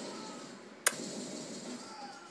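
A single sharp click about a second in, from a hand handling the phone that is recording, over faint room tone.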